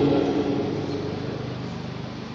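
A pause in a man's speech through a microphone and PA in a hall: the last of his voice and its echo die away into faint room noise and hum.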